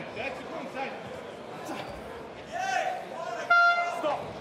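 End-of-round horn in an MMA arena: one steady, loud tone that starts suddenly about three and a half seconds in, over crowd noise and shouting, signalling the end of the round.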